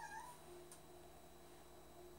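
A short pitched animal call, rising then falling, that ends about a third of a second in; then near silence, with one faint click.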